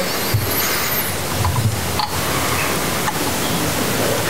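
Steady, even hiss of background noise, about as loud as the speech on either side.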